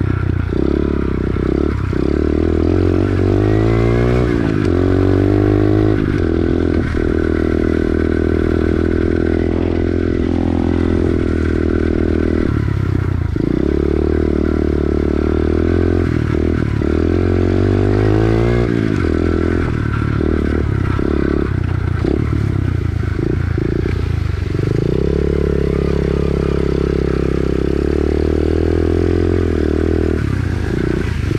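SSR pit bike's single-cylinder four-stroke engine running as it is ridden, its pitch climbing a few times early on as the throttle opens. From about the middle on it drops back briefly again and again as the throttle is eased and reopened.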